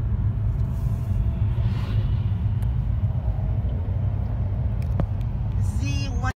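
Steady low rumble of road noise from a car travelling at highway speed.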